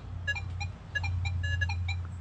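Nokta Legend metal detector sounding a quick run of short target beeps at a few different pitches as its coil sweeps a test target, over a steady low hum.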